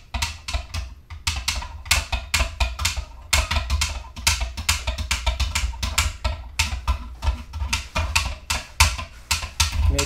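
A stirrer clicking and knocking rapidly and unevenly against the etching tank, several strikes a second, as salt is stirred into the water to dissolve it into the salt-water etching bath.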